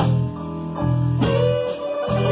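Live blues band playing an instrumental passage between sung lines: electric guitar over bass and drums, with a drum or cymbal hit right at the start.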